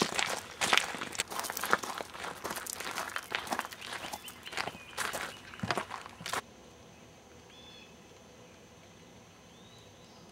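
Footsteps crunching on a gravel path, several people walking downhill at an uneven pace. About six seconds in, the footsteps cut off suddenly to quiet outdoor air with two faint bird chirps.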